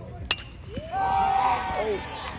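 A metal baseball bat strikes a pitched ball with one sharp, ringing ping a moment in, then a spectator lets out a long, loud yell as the ball flies.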